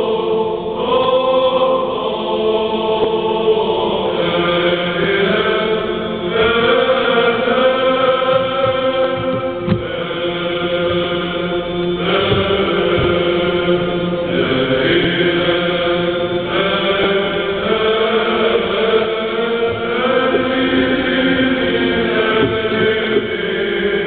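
Church choir singing a Bulgarian Orthodox hymn unaccompanied, in long held chords that move to a new chord every couple of seconds.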